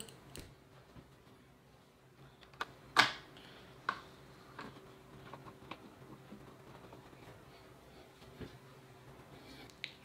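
Scattered small clicks and taps of a screw being driven in by hand with a hand tool during chair assembly, the sharpest about three seconds in, over a faint steady hum.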